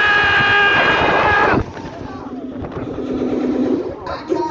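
A rider on a drop-tower ride giving one long, loud scream as the ride drops; the scream rises at first, then holds steady, and cuts off about a second and a half in. After it comes quieter fairground noise.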